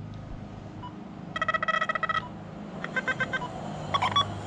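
Electronic beeps from an XP Deus metal detector's handheld remote as its buttons are pressed to change programs: a rapid run of short pitched beeps a little over a second in, then a few more short beeps near the end. A low steady hum runs underneath.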